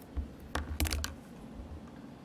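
A short cluster of sharp clicks and light knocks from objects handled on a desk, bunched in the first half second or so.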